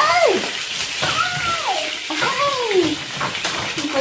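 Food sizzling in a frying pan on an electric stove, under four high calls that each rise and then fall in pitch, about a second apart.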